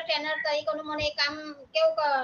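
A woman speaking Gujarati.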